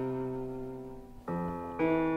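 Classical piano trio of violin, cello and piano in a slow movement. A held chord fades away, then the piano strikes a new chord just after a second in and another near the end.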